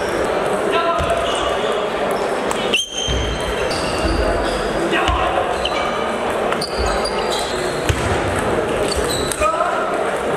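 Table tennis balls clicking off tables and bats, with many short pings at irregular intervals from the near rally and neighbouring tables. They sound over a steady murmur of voices, echoing in a large sports hall.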